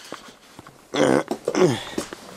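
Two short vocal sounds about a second in, the second sliding down in pitch, over faint handling clicks.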